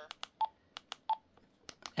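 Retevis RA-89 handheld radio's keypad being pressed: a string of sharp button clicks and two short beeps, the radio's key-press confirmation tones as its power-level menu is set.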